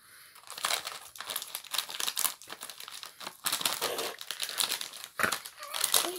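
Snack packets crinkling as they are handled and pulled at: a striped popcorn bag and a colourful sweet wrapper, giving a dense, irregular crackle that runs on for several seconds.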